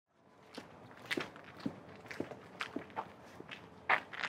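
Footsteps: a series of sharp, separate steps, about two a second, the loudest near the end.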